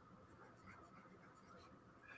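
Near silence, with faint scratching of drawing strokes.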